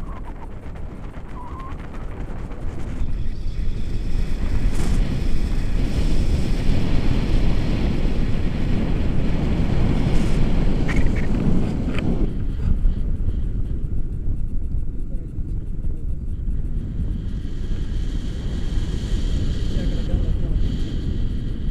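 Wind buffeting the microphone of a camera held out on a pole from a tandem paraglider in flight: a loud, steady low rumble that grows a little stronger a few seconds in.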